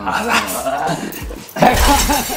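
Two men laughing hard, with a brief spoken 'azassu' (thanks). The laughter is loudest near the end.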